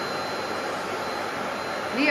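Canister vacuum cleaner running steadily: an even rushing hum with a thin, high, constant whine from its motor.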